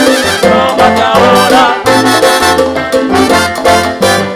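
Live salsa orchestra playing an instrumental passage: trumpets and trombones play over an upright bass line and Latin percussion.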